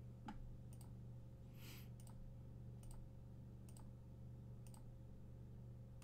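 Computer mouse clicks, about six of them spread irregularly across a few seconds, as a web page's randomize button is clicked over and over, over a faint steady electrical hum.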